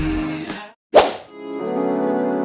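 Background music fading out, a moment of dead silence, then one sharp whip-like swish about halfway through, an editing transition effect, before soft piano music begins.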